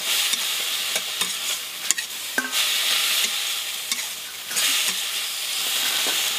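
Food frying in a wok over a wood fire, stirred with a metal spoon: a steady sizzle that swells and eases, with several sharp clicks and scrapes of the spoon against the pan.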